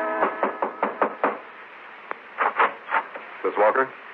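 Knocking on a door, a radio-drama sound effect: about six quick, evenly spaced raps in the first second or so, followed by a few words of speech.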